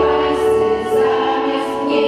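Women's choir singing long held notes in a slow song, with keyboard accompaniment underneath.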